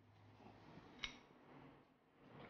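Near silence with one faint, sharp click about a second in: a pastry brush tapping against the glass bowl of beaten egg wash.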